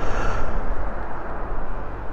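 Wind blowing over the camera microphone: a steady low rumble.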